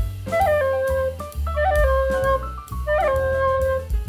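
Soprano recorder playing a short phrase over a backing track with bass and drums. Three times the line steps down from Re to Do, each time with a quick grace note flicked up to a higher note before settling on the held low Do: an ornament that smooths the Re-to-Do transition.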